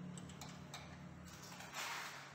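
Steel spanner turning a bolt on a spinning bike's base stabilizer, giving a few light metallic clicks and scrapes, the loudest near the end.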